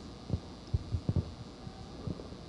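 Handling noise from a handheld microphone as it is passed from one person's hand to another's: several short, dull low thumps over a faint hum.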